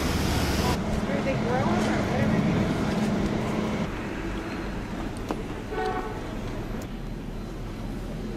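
Town street ambience with vehicles and faint voices, and a steady hum in the first half. One short car horn toot about six seconds in.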